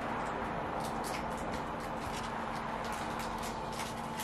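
Steady room hiss with a low hum under it, and a few faint light taps and rustles from a framed picture being pressed against a wall.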